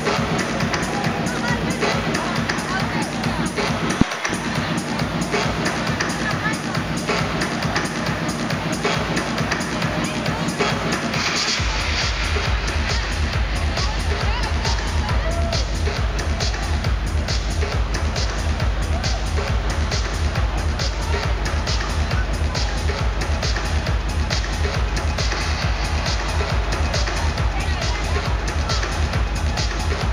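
Loud electronic dance music from a DJ set over a festival sound system, heard from inside the crowd with crowd noise mixed in. About twelve seconds in, a steady kick-drum beat comes in and keeps going.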